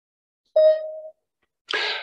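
A single electronic beep: one steady mid-pitched tone lasting about half a second.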